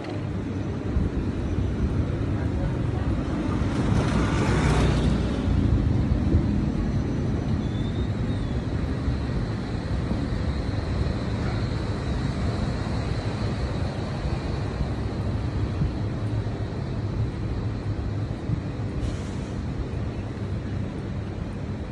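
Steady low rumble of street traffic, with a motorbike or scooter passing close by, loudest about four to five seconds in.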